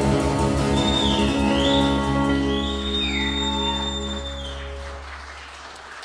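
Live band's final chord held and fading out at the end of a song, acoustic guitar and bass sustaining. A high sliding tone dips and comes back up twice above the chord.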